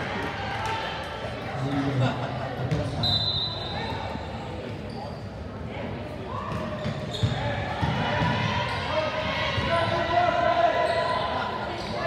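Basketball bouncing on a hardwood gym floor during play, with repeated short thumps, under spectators' talk in the gym.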